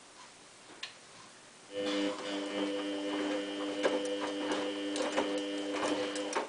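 Samsung WF8804RPA washing machine's drum starting to turn about two seconds in: a steady motor whine with a string of clicks and knocks from the laundry tumbling in the drum.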